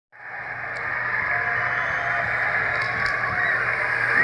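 A large arena crowd cheering, heard through a television's speaker: a steady, muffled wash of noise that swells over the first second and then holds.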